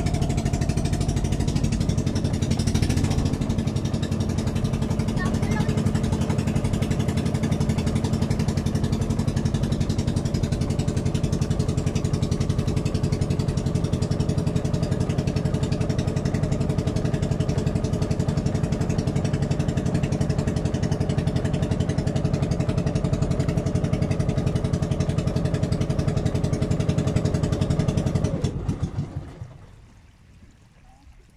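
Outrigger boat's engine running steadily at a constant speed, then shut off near the end, its pitch falling as it winds down over about a second.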